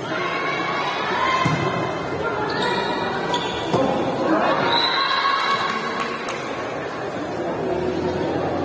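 Volleyball being struck several times in a rally, sharp slaps of hand on ball a second or so apart, over players and spectators shouting and cheering in a large hall.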